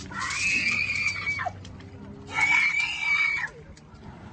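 A woman screaming twice, two long, high-pitched shrieks of about a second each; the first drops in pitch as it breaks off.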